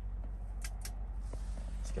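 A steady low hum with a few faint clicks and rustles near the middle.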